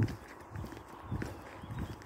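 Soft thumps at a walking pace, about one every half second, with the first the loudest: footsteps of a person walking outdoors, heard at the phone's microphone.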